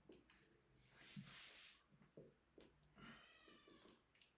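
Faint dry-erase marker strokes on a whiteboard: a short high squeak near the start, a longer scratchy stroke about a second in, and a pitched squeak about three seconds in.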